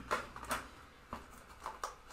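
Cardboard medication carton and its tray being handled as an autoinjector pen is pulled out: a few short light clicks and rustles.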